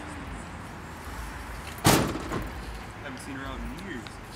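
Low steady rumble of a carbureted muscle-car engine idling, with one loud sharp bang about two seconds in.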